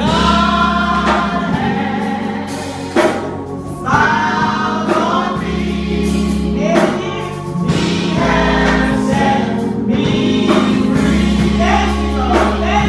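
A woman singing a gospel song into a microphone, with other voices joining in, over instrumental backing with a steady bass line. The singing breaks off briefly about three seconds in, then picks up again.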